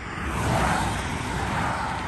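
Road traffic passing: a vehicle's tyre and road noise on the highway, swelling about half a second in and then holding steady.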